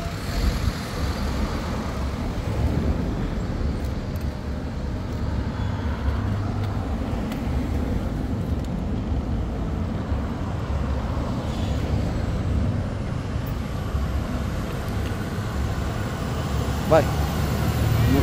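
Street traffic: a low, steady engine rumble from passing vehicles, a car and a heavy truck among them. A faint high whine rises in pitch a little after the middle.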